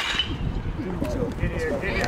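A bat striking a baseball with a sharp crack right at the start, followed by overlapping shouts and chatter from players and people around the field.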